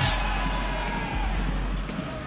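Background music for a countdown transition, opening with a short whoosh and carried on a steady low bass.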